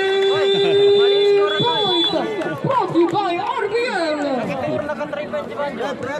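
Spectators' overlapping chatter close by, several voices talking at once. For the first second and a half a steady, held tone with a fixed pitch sounds over the voices and then stops.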